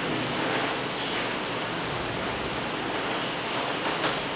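Steady hiss of background noise, even and unchanging.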